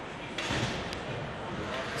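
Ice rink ambience: a steady murmur of voices and arena noise, with a brief noisy rush about half a second in and a single sharp tap just after.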